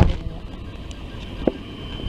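Handling noise of a handheld camera: a low rumble with one sharp click about one and a half seconds in.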